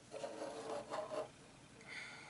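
Faint rubbing and scraping of fingers working a small plastic clip cover onto a Peco HO-scale turnout, lasting about a second.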